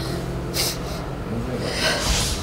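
A young man crying, sniffling and drawing gasping breaths: a sharp sniff about half a second in and a longer one near the end. Steady held tones of background music run underneath.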